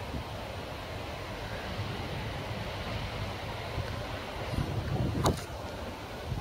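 Outdoor ambience of wind rumbling on the microphone over a steady background hum, with one brief sharp knock about five seconds in.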